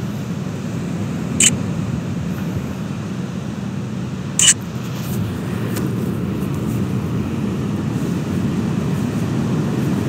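Steady low rumble of ocean surf at the shoreline, swelling slightly. Two sharp clicks stand out, about three seconds apart.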